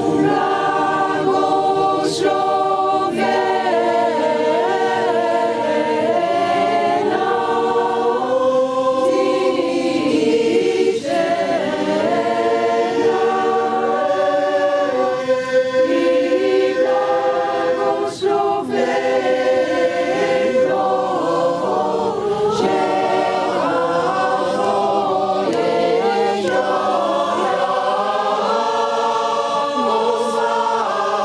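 A mixed choir of men's and women's voices singing in several parts, holding chords that shift every second or two.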